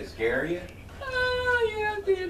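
Domestic cat meowing: a short meow near the start, then a long, slowly falling meow about a second in.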